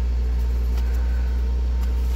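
Suzuki Alto's small petrol engine idling steadily, heard from inside the cabin, running again after being jump-started from a flat battery.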